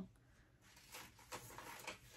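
Near silence with a few faint, short rustles and clicks, like a paper pattern piece being handled.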